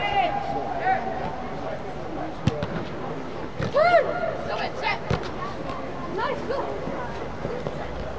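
Short shouted calls from people around a soccer game, the loudest about four seconds in. Two sharp thuds of a soccer ball being kicked come about two and a half and five seconds in.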